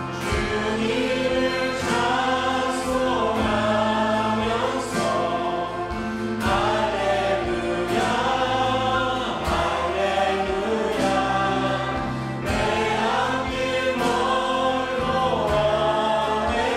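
A mixed group of men and women singing a Korean worship song together in harmony, with instruments playing along.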